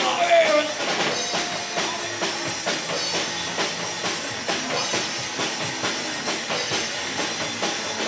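Live rock band playing an instrumental stretch between vocal lines: drum kit keeping a steady beat under electric guitar. A sung phrase trails off just after the start.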